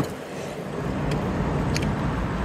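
Steady road traffic noise, a hiss that swells a little over the first second, with a couple of faint clicks.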